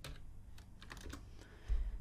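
Computer keyboard keys tapped a few times, faint and sparse, as a command is typed in and entered. There is a low thump near the end.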